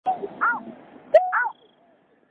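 Waterbird calls: several short, arched notes in quick succession, some opening with a sharp click, over a light hiss in the first second.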